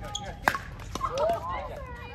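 A pickleball paddle striking the plastic ball with one sharp pop about half a second in, with a couple of fainter ball clicks around it as the rally ends. Indistinct voices of players talk through the second half.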